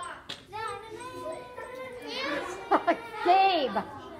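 Several children's voices calling out at once in a classroom, with loud, high, sweeping exclamations about two seconds in and again near the end.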